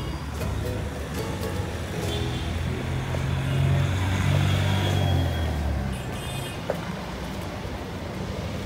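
Street traffic: a motor vehicle's engine running close by, a steady low hum that swells a couple of seconds in and fades about six seconds in.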